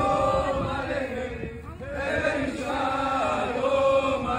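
A crowd of demonstrators singing together in unison, a chant-like song with long held notes and a short break about halfway through.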